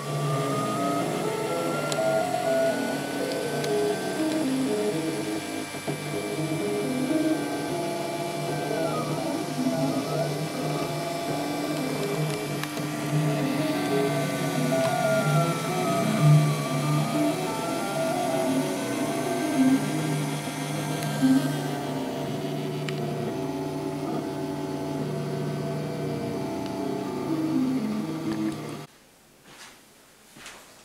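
A 3D printer running: its stepper motors whine in shifting, stepping pitches, with slow rising and falling glides as the print head traces curves, over a steady fan hum. It cuts off suddenly about a second before the end.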